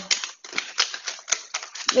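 Quick, irregular clicking taps, like fingernails typing on a phone's touchscreen.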